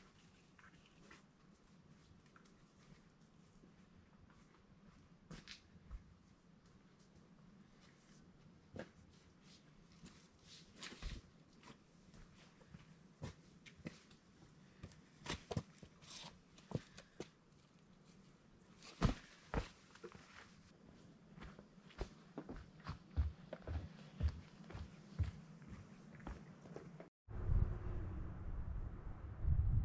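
Footsteps of a hiker coming down a steep, rocky forest trail: scattered scuffs and crunches on rock, roots and forest litter, faint at first and growing louder and more frequent from about ten seconds in as he nears.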